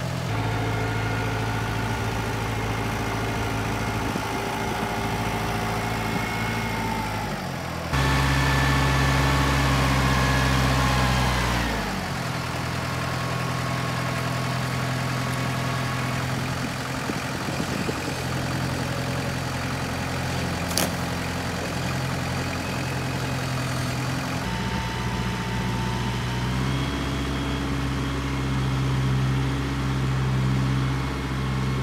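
Compact tractor engine running steadily as it drives with a log in the front-loader bucket. It is louder from about 8 to 12 seconds in, where the revs drop away, and there is one sharp click around 21 seconds in.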